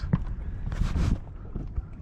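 Wind buffeting the microphone as a steady low rumble, with a short hiss about a second in.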